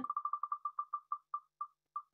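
Tick sound of the Wheel of Names online spinner wheel as it spins down: short, identical high-pitched ticks, rapid at first and spacing out steadily as the wheel slows.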